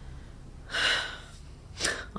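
A woman's sharp, audible breath about two-thirds of a second in, then a shorter breath just before she speaks.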